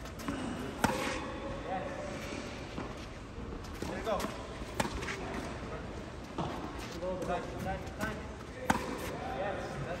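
Tennis balls being hit with racquets on a clay court: sharp pops of ball on strings about every four seconds, the loudest near the end, with fainter knocks of bounces and other hits between.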